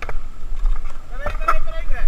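Skateboard wheels rolling and carving over the concrete of a skate bowl, a low steady rumble with wind on the microphone. A short pitched call rises and falls over it in the second half.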